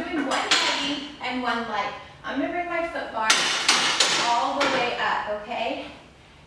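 A woman's voice, talking and laughing without clear words, over clinks and knocks as the Pilates ring and reformer are handled.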